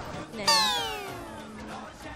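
A comic sound effect for a wrong answer: one sudden pitched tone that slides steadily down in pitch over about a second, starting about half a second in.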